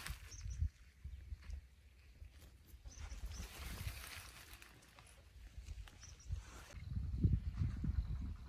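Footsteps and grass and weeds rustling as someone walks through an overgrown field, with low thumps and rumble on the microphone that grow stronger near the end. A hissy rustle runs through the middle and cuts off suddenly a little before the end.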